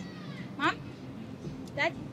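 A woman's voice calling two one-word questions, 'Mom?' and then 'Dad?', each short and rising steeply in pitch, about a second apart.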